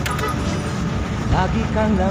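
Steady low rumble of a vehicle's engine and road noise heard inside its cabin, with a short click just after the start.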